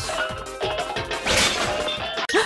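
Kitchen drawers and a stove's grill drawer being yanked open in quick succession, with sharp knocks and a loud clattering crash about a second and a half in, over background music.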